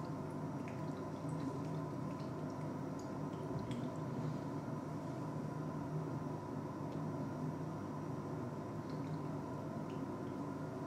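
Hydrochloric acid being poured into the top of a glass burette: a faint trickle with a few small drips and ticks, over a steady low hum.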